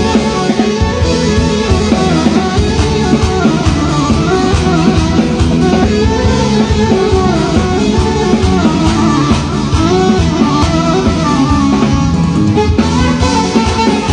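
Live band playing instrumental music: electronic arranger keyboards over a drum kit with cymbals and a bass line, at a steady, loud level.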